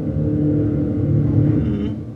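Horror film trailer soundtrack: a low, steady rumbling drone with held tones over it, building tension.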